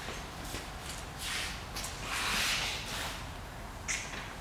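Rope of a 3:1 mechanical advantage haul system pulled hand over hand through gloved hands and a pulley. Two swishes of running rope, the second longer and louder, then a brief sharp sound near the end.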